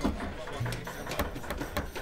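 Kitchen work at a counter: irregular light knocks and clicks of utensils on wood and pots.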